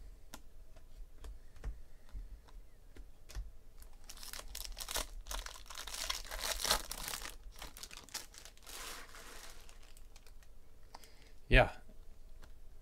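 Baseball cards being flicked through by hand with soft clicks, then a trading-card pack wrapper crinkling and tearing as it is ripped open, for about five seconds.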